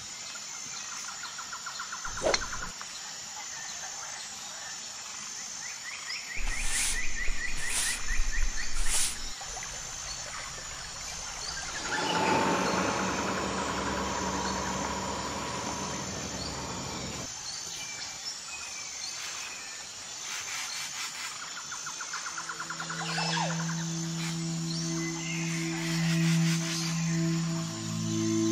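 Birds chirping and trilling in the background, with a single sharp knock about two seconds in and a few louder bursts a little later. Near the end a low, held ringing tone comes in as ambient music begins.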